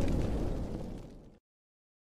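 Rumbling, explosion-style sound effect of an animated logo intro, fading away and cutting out about a second and a half in.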